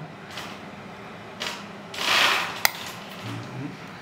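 Small hinged plastic compartment cover on an RC excavator model being pushed shut: a brief rustling scrape about two seconds in, ending in one sharp click as it snaps closed.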